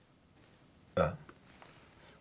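A man's single short 'ah', starting suddenly about a second in and fading quickly; otherwise faint room tone.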